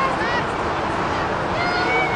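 Short, high calls and shouts from distant voices across a soccer field, over a steady rushing background noise.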